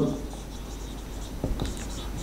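Marker pen writing on a whiteboard, quietly, with a few small ticks about one and a half seconds in.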